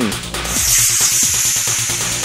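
Electronic dance music with a steady beat. About half a second in, a loud high hiss rises over it: a model rocket motor firing at lift-off.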